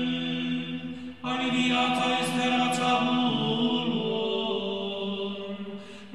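Chant-like choral singing of long held notes. The voices drop off briefly about a second in, then come back in.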